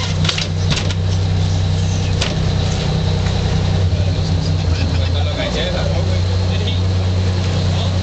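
Boat engine running at a steady drone, with a few short knocks over it.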